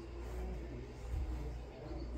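Quiet room tone: a low, steady hum with no distinct events.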